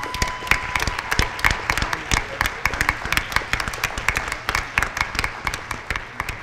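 An audience applauding: many hands clapping densely and irregularly. A thin, steady tone sounds during the first second.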